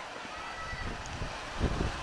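Wind noise on a motorcycle-mounted action camera's microphone, over the low rumble of the motorcycle and surrounding traffic, while riding slowly in traffic.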